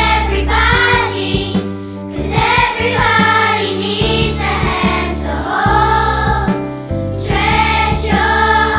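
A school children's choir singing a song together, over instrumental backing with steady bass notes.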